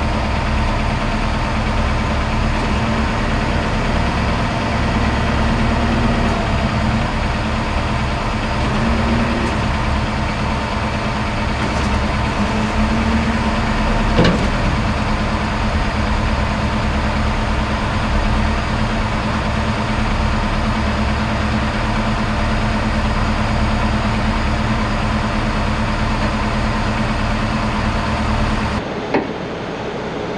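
Heavy wrecker's diesel engine running steadily under load as the overturned tanker is winched upright, with one sharp knock about halfway through. The sound changes abruptly to a quieter one just before the end.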